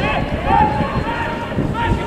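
Men shouting during a football match as the ball is crossed into the box: several drawn-out, high calls over a rough rumble of outdoor noise.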